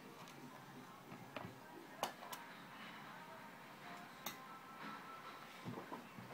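A screwdriver clicking and tapping on the screws and plastic underside of an IBM ThinkPad T60 laptop as it is taken apart: a few sharp, irregularly spaced clicks, the loudest about two seconds in.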